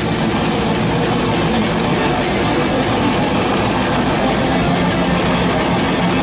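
Heavy metal band playing live at full volume: distorted electric guitars and bass over fast, evenly spaced drumming.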